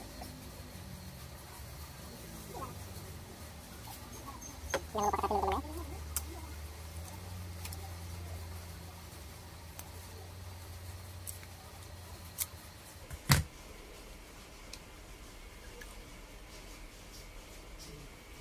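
Hands reassembling a metal spinning fishing reel: faint rubbing and handling of its parts, with a few small clicks and one sharp click a little past the middle.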